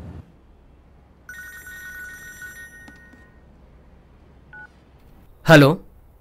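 A phone's electronic ring, a steady high tone lasting about two seconds, then a single short beep a couple of seconds later, just before a man answers with "Hello".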